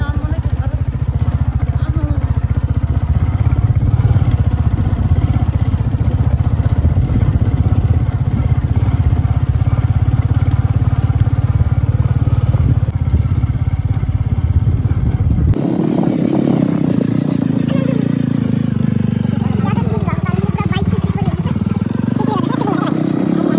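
Motorcycle engine running at low speed, a steady low pulsing beat. About fifteen seconds in the sound changes abruptly to a higher, lighter engine note that dips and then climbs again near the end.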